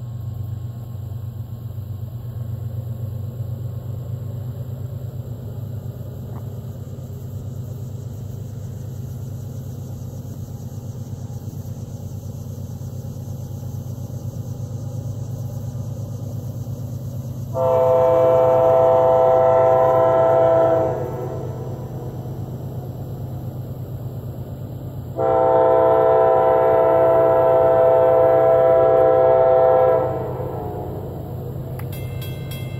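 Diesel freight locomotive's multi-chime air horn sounding two long blasts from the approaching train, the second still going at the end. Under it runs a steady low rumble.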